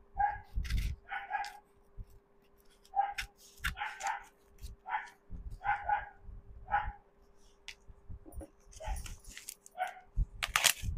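A dog barks repeatedly in short, irregular barks while scissors snip through a brown-paper parcel's wrapping and tape, with clicks and paper rustling between the barks.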